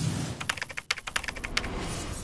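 Keyboard-typing sound effect: a quick run of sharp key clicks, about ten a second, lasting just over a second.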